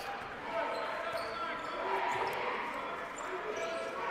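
A basketball being dribbled on a hardwood gym floor, under a steady murmur of crowd voices.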